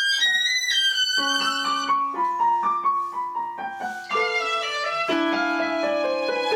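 Violin and digital piano playing a classical duet, the violin holding long bowed notes over the piano's chords.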